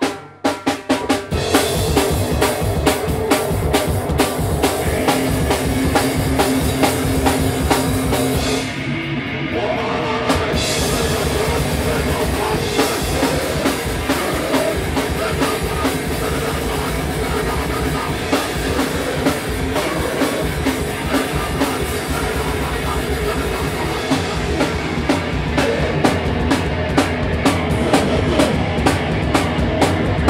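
A live rock band playing loud and driving, with the drum kit to the fore. It kicks in abruptly with a few hits right at the start, then plays at full force, with a short break in the cymbals a third of the way through.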